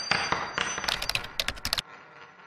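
Sound effects for an animated logo reveal. A ringing metallic hit fades, then a quick run of sharp typing-like clicks starts about halfway in and stops suddenly near the end, leaving a faint fading tail.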